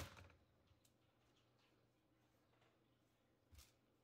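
Near silence, broken by one sharp click at the start: a plastic retaining clip of the ThinkPad E15's bottom cover snapping free as the cover is pried off. A faint short knock follows near the end.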